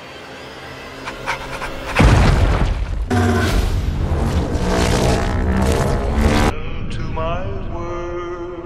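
Movie trailer soundtrack: a deep boom hit about two seconds in, then dramatic music with sustained tones, and a rising tone near the end.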